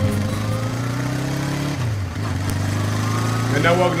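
A motor vehicle engine idling steadily, its pitch dipping and recovering briefly about halfway through. A voice starts speaking near the end.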